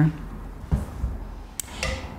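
Quiet room noise while makeup tools are handled, with a soft low bump and then a short sharp click.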